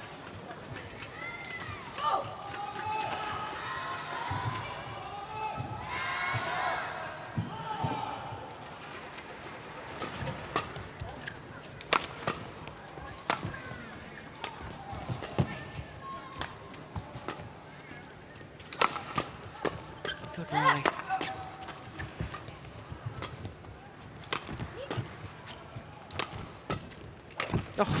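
Badminton rally: rackets striking the shuttlecock in sharp cracks about every second, over the murmur of voices in the arena.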